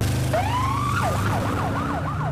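Emergency vehicle siren that comes in suddenly with one rising wail, then switches to a fast yelp of about four up-and-down sweeps a second, over a steady low rumble.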